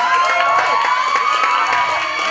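Audience cheering and clapping, with one voice holding a long shout that rises slightly in pitch above the crowd.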